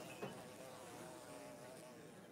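A fly buzzing, faint and gradually trailing off.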